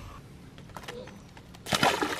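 A large bass hitting the river water with a loud splash near the end, a clumsy release as the squirming fish slips out of the hand while being switched between hands.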